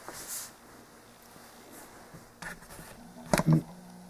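A brief hissy stroke of sandpaper rubbing over the latex-painted surface of a model airplane at the start, then faint handling of the sanding sheet with a couple of sharp taps near the end.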